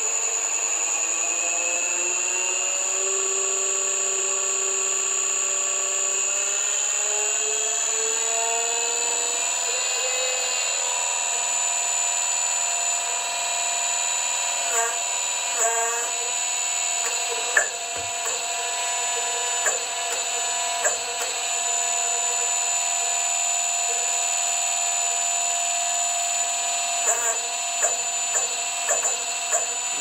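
Electric hydraulic power pack running on its first test, motor and pump giving a steady whine whose pitch climbs over the first ten seconds or so and then holds steady. From about halfway through, a scatter of sharp clicks and knocks comes as the control valve is worked and the ram extends.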